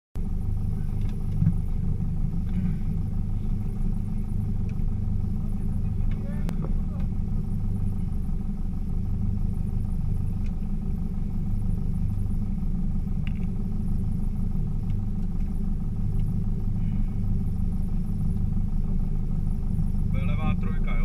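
Honda Civic VTi rally car's four-cylinder engine idling steadily while the car stands still, heard from inside the cabin.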